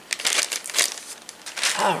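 A clear plastic zip-top bag crinkling as it is handled, in a quick irregular run of sharp crackles.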